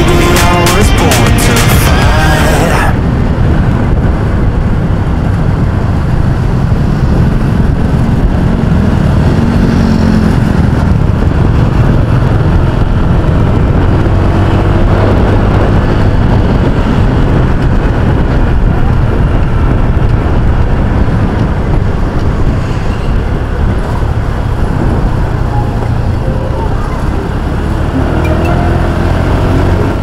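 Background music stops about three seconds in, giving way to the loud, steady rush of riding a Honda Click scooter: wind buffeting the microphone over the hum of the engine and tyres on the road.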